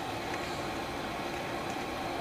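Water boiling in a wide stovetop pan of artichokes, a steady, even hiss.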